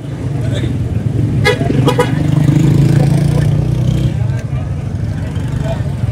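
Street traffic: a motor vehicle's engine running close by, swelling to its loudest about two to four seconds in and then easing off.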